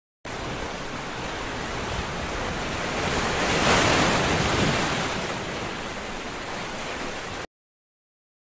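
A rushing hiss of noise from a transition sound effect in an animated title. It starts suddenly, swells to its loudest about four seconds in, eases off and cuts off abruptly.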